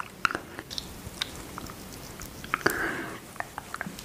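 Close-miked sounds of a thick cream face mask being squeezed from a tube and worked between fingers and skin: scattered small sticky clicks, with a longer smeary squish about three seconds in.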